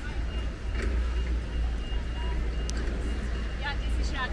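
Outdoor ambience of a busy pedestrian square: a steady low rumble with a thin high whine that stops about two-thirds of the way in, and passers-by's voices near the end.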